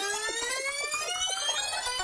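Electronic logo-sting sound effect: a siren-like tone with many overtones that climbs in pitch, peaks about a second in and then starts to fall, with a stuttering, stepping warble running through it.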